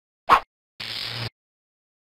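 Cartoon sound effects for an animated logo: a short pop, then about half a second of hissing noise over a low hum that cuts off suddenly.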